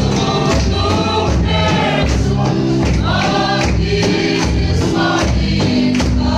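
A congregation singing a gospel hymn together to a steady beat of large hand-beaten drums (Mizo khuang), with hand clapping.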